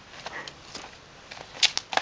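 A cat's paws swatting and scuffing against a cloth-sleeved hand during play-fighting: a few faint scuffs, then a quick cluster of sharp rustling slaps about a second and a half in.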